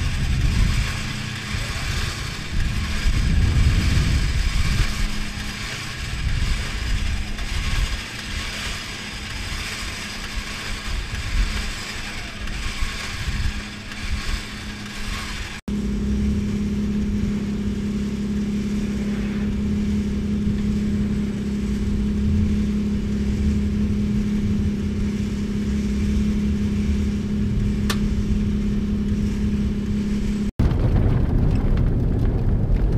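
Uneven low rumble and noise during a winch-line set-up, then, after a cut, a steady low mechanical hum from the recovery rig that holds evenly without changing pitch.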